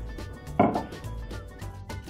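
A single knock about half a second in, as a plastic jug of juice is set down on a stone countertop, over soft background music.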